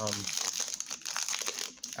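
Foil and plastic packaging crinkling steadily as Pokémon card booster packs are handled.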